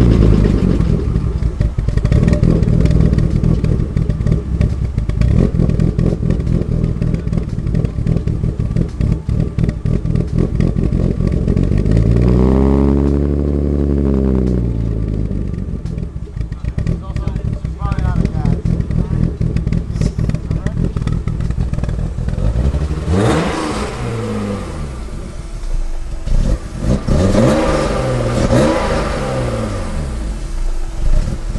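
BMW E30's engine running at idle just after being started, revved up and back down once about halfway through, then blipped several more times near the end.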